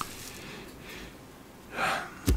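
A man's audible in-breath near the end, taken before he resumes speaking, after a quiet pause with a faint click at the start.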